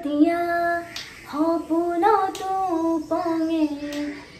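A young woman singing a song without accompaniment, holding long notes that slide up and down in pitch, with short breaths between phrases.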